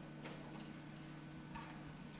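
A few faint ticks at uneven spacing over a low, steady hum.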